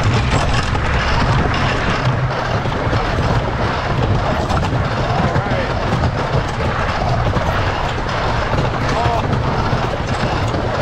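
Car of a 1902 side-friction wooden roller coaster running along its track: a steady rumble and clatter of its wheels on the wooden-track rails.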